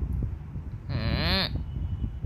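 A single drawn-out wordless vocal call about a second in, rising then falling in pitch, over a steady low rumble.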